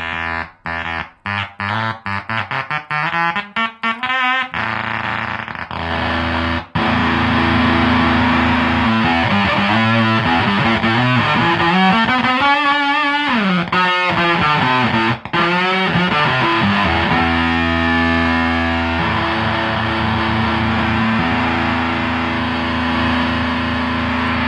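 Electric guitar played through a Zvex Fuzz Factory fuzz pedal. For the first few seconds the sound breaks up into a fast, choppy stutter. It then becomes a loud, sustained fuzzed tone whose pitch bends down and back up around the middle, and settles into a held note.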